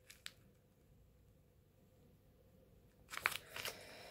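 Mostly near silence, with one sharp click just after the start, then a brief run of crinkles and clicks about three seconds in as packaging is handled.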